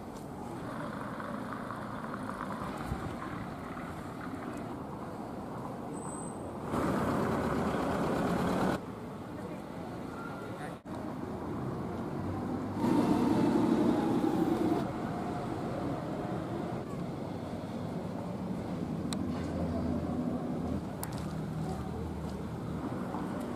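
Town street ambience: road traffic with people talking, a steady background that jumps in level and character several times where short clips are joined. It is loudest in two passages, briefly at about a third of the way in and again just past the middle.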